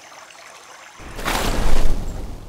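Cartoon water splash: after a faint watery hush, a rush of water rises about a second in and swells into a loud splash near the end, as the characters burst up out of the lake.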